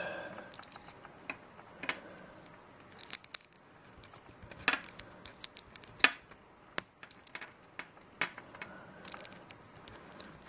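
Irregular sharp clicks and small scrapes of a precision screwdriver working the screw terminals of a small plug-in Phoenix terminal block, tightening the wire leads down, with fingers handling the connector and wires.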